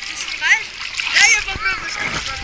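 Sea water splashing close by, amid the high-pitched calls and chatter of children and other bathers.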